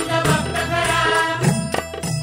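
Marathi devotional gondhal song: a sung melody with accompaniment, then a run of drum strokes about a second and a half in.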